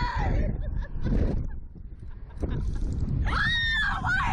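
Rush of air buffeting the microphone of a slingshot ride's onboard camera in flight. Near the end, a rider gives one long, high-pitched scream that rises and then falls.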